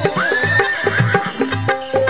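A horse whinny rises about a tenth of a second in and wavers for about a second, laid over Rajasthani devotional bhajan music with a steady drum beat.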